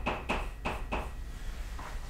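Chalk writing on a blackboard: a quick run of short taps and scratches as letters are written, mostly in the first second, then fainter.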